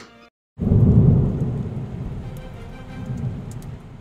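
Thunderclap sound effect with rain: a loud low rumble breaks in suddenly about half a second in and fades away over the next three seconds.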